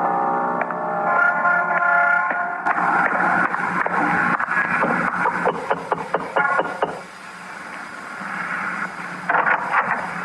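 A radio-drama music bridge of held keyboard chords ends about a quarter of the way in. It gives way to sound effects: a run of quick clicks and knocks for several seconds, a quieter stretch, then a short burst near the end.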